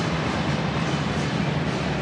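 Soccer stadium crowd: steady, even noise from the packed stands during open play.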